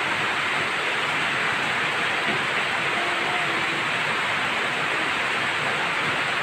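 Heavy rain pouring down, an even, unbroken hiss.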